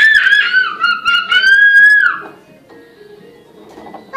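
A toddler's long, high-pitched squeal that rises, holds and breaks off about two seconds in.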